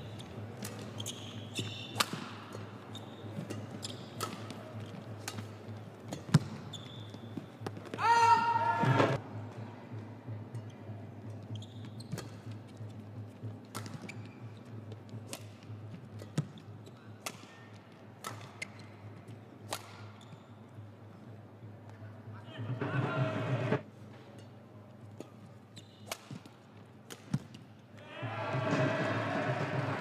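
Badminton rally: rackets hitting the shuttlecock in sharp, irregular cracks, with court shoes squeaking on the mat, in a large hall. Short bursts of voices break in about eight seconds in, around twenty-three seconds, and near the end.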